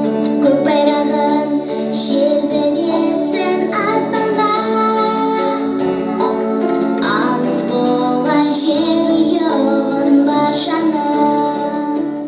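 A girl singing a patriotic song into a microphone over musical accompaniment.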